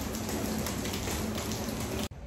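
Rain falling pretty hard, a steady hiss with no let-up.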